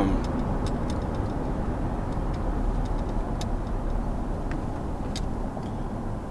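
Steady road and engine noise heard inside a moving car's cabin, a low rumble with a few faint, scattered clicks.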